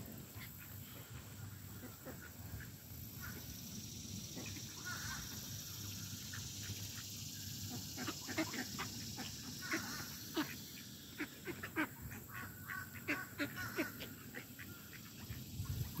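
Flock of mallards and American black ducks feeding on scattered corn: quiet calls among many short irregular ticks and rustles, busier in the second half.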